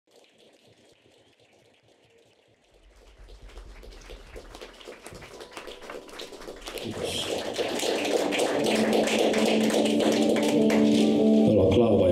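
Live band music fading in from near silence: first a low hum and scattered soft taps and clicks, then from about seven seconds a swell of sustained, steady notes that grows louder.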